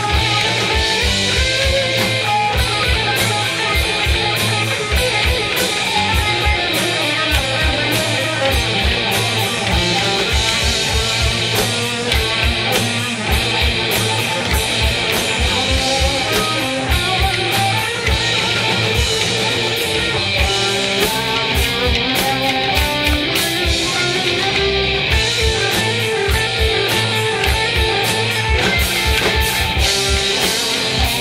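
Live rock band playing an instrumental passage: electric guitars over drums, with fast repeated kick-drum beats and cymbals, and no vocals.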